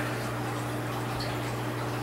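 Greenhouse equipment running: a steady low hum with a fainter tone above it and an even hiss.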